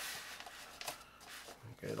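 Light rustling of a fabric stuff sack being handled as stainless steel safety wire is pushed around its drawstring channel, with a few faint clicks.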